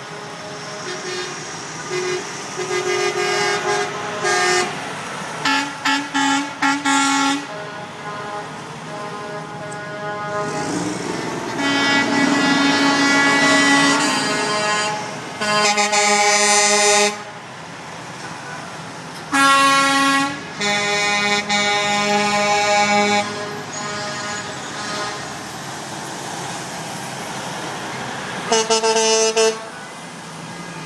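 Air horns of big-rig trucks passing in a convoy, sounded over and over: groups of short toots and several longer blasts of two to three seconds, at several different pitches, over the running engines of the passing trucks.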